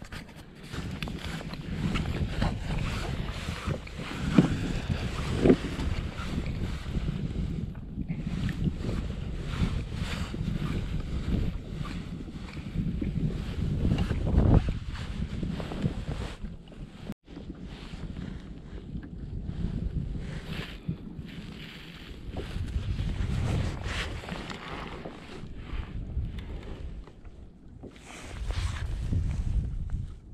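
Wind buffeting the microphone over water lapping against a kayak's hull, with a few sharp knocks and a brief dropout about halfway through.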